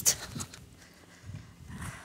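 Wind rumbling on the phone's microphone, with a couple of soft gusts, in a pause between words.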